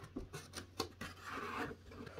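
Faint rubbing and rustling of packaging as a graphics card in its plastic wrap is handled in a cardboard box with a molded pulp tray, with a few light clicks in the first second and a soft scraping rustle after about a second.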